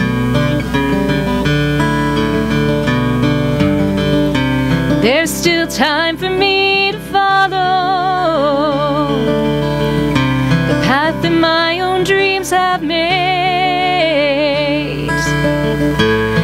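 A woman singing a slow song with acoustic guitar accompaniment. The guitar plays alone for the first few seconds, then the voice comes in with a wavering vibrato, pausing briefly about two-thirds of the way through before going on.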